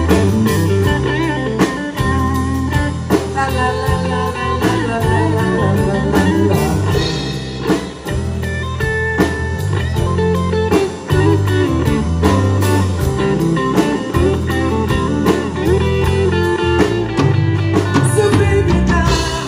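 Live band playing an instrumental passage without vocals: electric guitar over bass guitar and drum kit.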